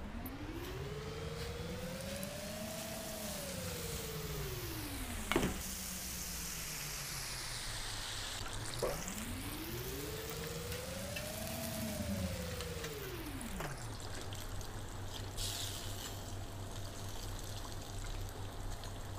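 Battered chicken pieces deep-frying in hot oil in an electric fryer, a steady bubbling sizzle. Over it, a smooth tone rises and then falls in pitch twice, and there are two sharp clicks about five and nine seconds in.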